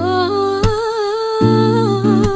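A woman singing one long wordless note that wavers slightly, over acoustic guitar chords. A strummed stroke comes about two-thirds of a second in, and a new chord about a second and a half in.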